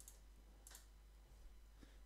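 Near silence broken by three faint clicks of a computer mouse, spaced about a second apart.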